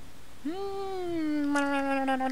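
A woman's long drawn-out "mmm" hum as she thinks, starting about half a second in. It rises briefly in pitch, then sinks slowly over more than a second and runs straight on into her next words.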